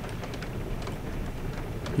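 Steady rain ambience: an even hiss with faint scattered ticks of drops.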